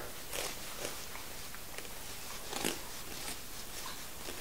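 Filleting knife cutting a fillet off a cod: a few faint, short cutting sounds as the blade slices through the flesh, the clearest about two and a half seconds in.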